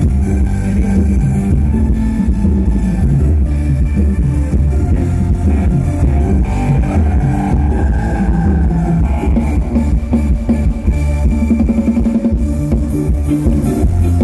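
Loud live band music for a Thai ramwong dance, played through a PA speaker stack: a steady beat with heavy bass and drums.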